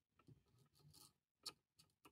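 Near silence, with one faint, short click about one and a half seconds in as a small steel thrust bearing is handled.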